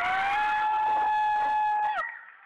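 One high voice holding a single long note for nearly two seconds, sliding up into it at the start and dropping off at the end, like a drawn-out cheer.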